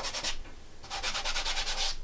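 Gloved hand rubbing quickly back and forth over a stretched canvas: a short run of strokes at the start, then a longer, steady run of about ten strokes a second from about a second in.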